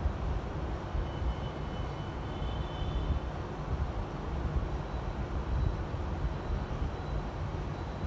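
Steady low rumbling background noise with no speech, with a faint high tone about a second or two in.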